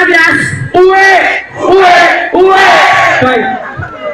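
Loud, drawn-out shouts, about four long syllables in a row, over crowd noise, fading near the end.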